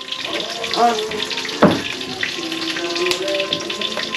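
Food sizzling and crackling in a pan over a wood fire, with faint music of held notes playing in the background and a single knock about halfway through.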